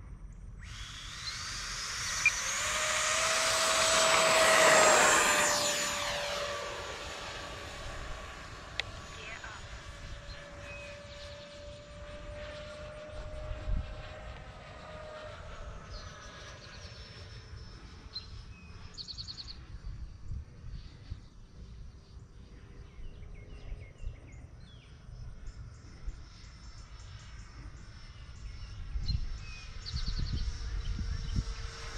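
Whine of an E-flite F-16 Thunderbirds 70 mm electric ducted-fan RC jet taking off. It swells as the jet comes down the runway, is loudest about five seconds in as it passes close by, and its pitch falls as it goes away. A fainter whine follows as it climbs and circles.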